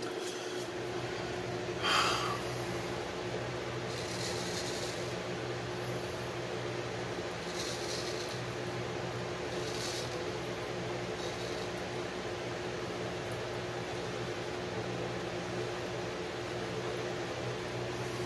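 Steady room hum, with a few faint, short scrapes of a straight razor cutting a week's stubble, and one brief louder sound about two seconds in.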